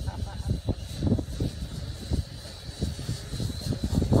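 Small toy quadcopter's motors giving a steady high-pitched whine that wavers slightly, with louder gusts of wind rumbling on the microphone.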